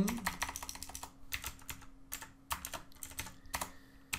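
Computer keyboard typing: irregular runs of quick keystrokes with short pauses between them.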